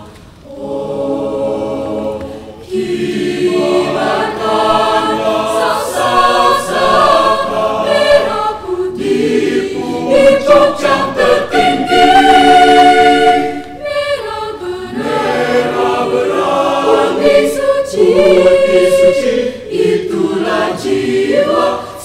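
Mixed-voice school choir singing in several parts, with brief breaks just after the start and about fourteen seconds in. The loudest passage is a long held chord about ten to thirteen seconds in.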